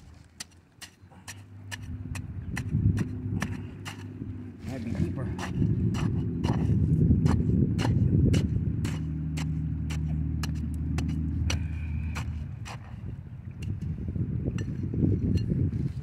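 A wooden stick jabbing and scraping into river gravel and stones, a run of sharp clicks a few times a second. Under it, a low engine rumble builds about two seconds in and fades near the end.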